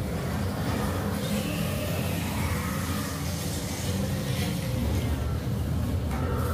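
Steady low rumble with no breaks or clear rhythm, the ambient noise inside a pirate-themed boat dark ride.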